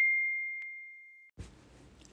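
A notification-bell sound effect: one clear, high ding that fades away over about a second. Faint room hiss follows near the end.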